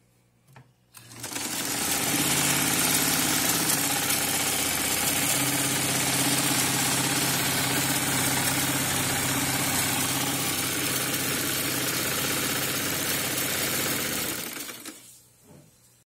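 Kenmore Stylist 86 sewing machine running under its foot controller: after a couple of light clicks it speeds up about a second in, runs at an even speed with a steady motor hum and needle clatter, then slows and stops near the end.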